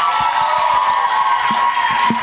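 Theatre audience applauding and cheering a team's introduction, with a steady held high tone running over the clapping.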